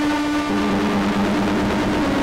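Homemade modular synth putting out screechy drone noise: a steady tone over harsh hiss, with a second, lower tone joining about half a second in.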